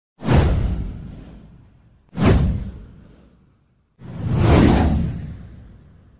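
Three whoosh sound effects of an animated title intro, about two seconds apart. The first two hit suddenly and fade away; the third swells up more gradually before fading.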